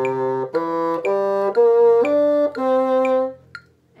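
Bassoon playing a short rising arpeggio of separate notes, about half a second each, from C up through E, G and B-flat to D, the opening of a practice phrase. The last note is held a little longer, then the playing stops.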